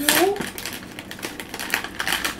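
Foil blind-bag wrapper crinkling as it is pulled open by hand, a dense irregular run of crackles.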